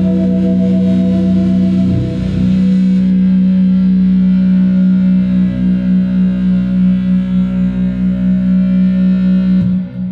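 Heavily distorted electric guitar with effects, holding one sustained low drone at a steady pitch. In the second half its loudness pulses a couple of times a second, and it dips sharply near the end.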